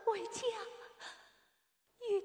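A Yue opera performer's female voice finishing a line with bending, drawn-out pitch, trailing away about a second in and then stopping.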